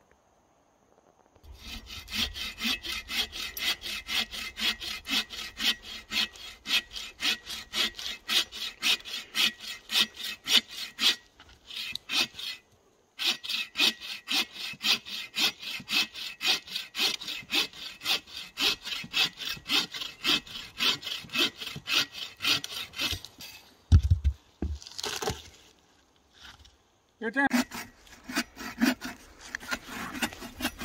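Bow saw cutting through a dead log for firewood, in steady rhythmic push-and-pull strokes, about two a second, with a short pause partway through. Near the end comes one heavy thump, then the sawing starts again.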